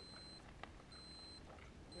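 Faint, high-pitched electronic beep repeating about once a second, three times, each beep lasting about half a second, with a single soft click between the first two.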